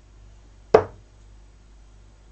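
A steel-tip 24 g dart striking a bristle dartboard: one sharp thud less than a second in.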